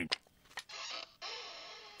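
Faint ticking of a grandfather clock, a few sharp ticks over a soft steady hiss.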